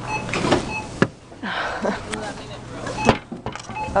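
Claw machine after a win: two sharp knocks, about a second in and about three seconds in, with a brief whirring rustle between them, over the machine's steady low hum.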